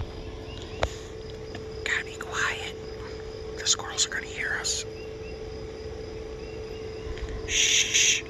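A small utility vehicle's motor running with a steady hum. A few brief voice-like sounds come over it in the middle, and a short hiss comes near the end.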